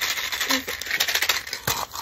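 Tiny plastic toy gumball machine being shaken, its gumballs rattling in a fast run of small clicks, with one sharper knock near the end.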